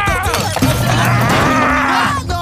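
A cartoon gorilla, voiced by an actor, roaring in rage: one long, loud bellowing cry.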